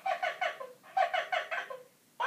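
1996 Tickle Me Elmo plush toy laughing through its built-in speaker after a squeeze of its body: two quick runs of giggling 'ha-ha' syllables, about five a second.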